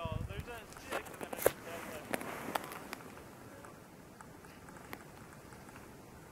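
A person's voice briefly at the start, then a few sharp clicks and crackles over about two seconds, then only a faint, steady outdoor background.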